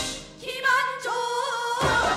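A woman sings live into a microphone in a Korean traditional-fusion band: after a short dip she holds one long, wavering note over sparse backing. The full band comes back in loudly just before the end.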